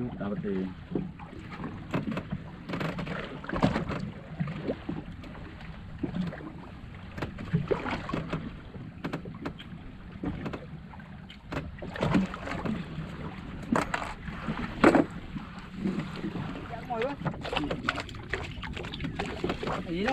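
Small wooden fishing boat drifting at sea: water slapping against the hull, with scattered knocks and clatter on board and a few faint voices.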